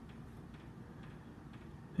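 Quiet room tone: a faint, steady background hiss with no distinct events.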